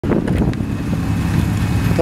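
A fifth-generation Chevrolet Camaro's engine running with a steady low exhaust note as the car rolls slowly past at low speed.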